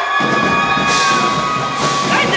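Marching band playing amid a cheering, shouting crowd: two long high notes held through the first second or so, with sharp drum or cymbal hits about one and two seconds in.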